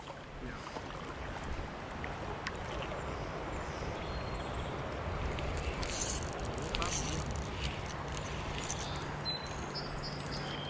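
Shallow creek current flowing and rippling steadily close to the microphone, with a few brief clicks around six and seven seconds in.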